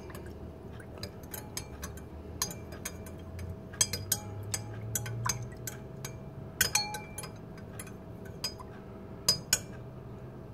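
A stainless steel spoon stirring salt into water in a small glass container, clinking irregularly against the glass with a faint swish of the water.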